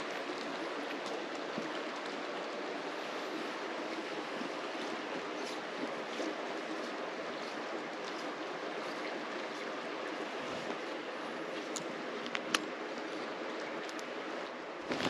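Creek water running steadily, an even rushing hiss, with a few faint clicks near the end.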